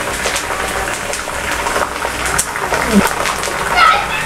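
Green leaves frying in hot coconut oil in an iron kadai: a steady, dense sizzling and crackle of bubbles as the water cooks out of the leaves.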